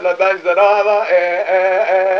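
A man singing a Kurdish dengbêj song, his voice wavering with ornaments and settling into a long held note in the second half.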